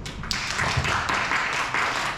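A small audience clapping, beginning about a third of a second in and keeping up steadily.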